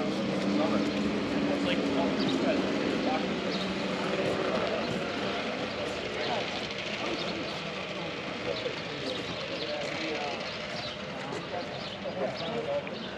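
Indistinct background chatter of people talking, with a steady engine drone that fades out over the first few seconds.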